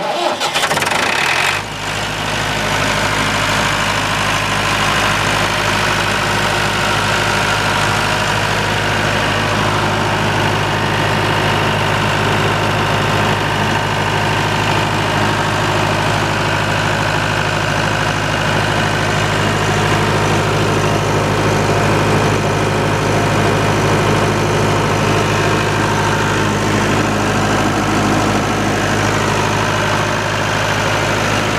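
Diesel engine of an Eegholm NS 40 generator set cranked by its electric starter and catching after about a second and a half, then running steadily at constant speed.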